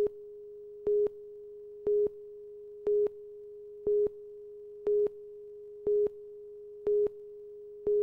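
Television broadcast countdown slate tone: a steady mid-pitched tone with a louder beep of the same pitch once a second, marking each number of the countdown, nine beeps in all before it cuts off.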